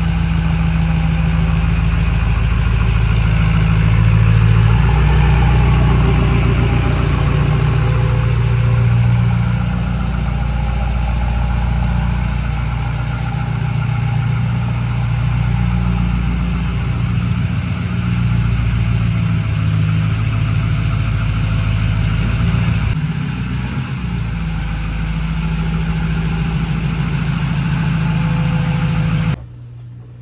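Race truck's Duramax diesel engine running at a steady idle, just started after a no-start that was traced to a switch that had been pushed. The sound cuts off suddenly near the end.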